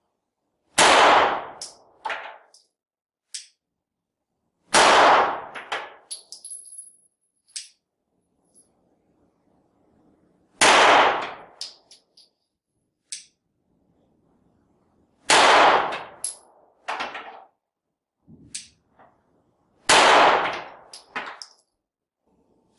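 Five single pistol shots from a 9mm Glock, fired slowly about four to five seconds apart. Each shot is followed by a few short metallic clinks.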